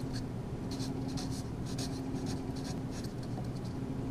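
Felt-tip marker writing on paper, a run of short scratchy strokes as words are lettered by hand.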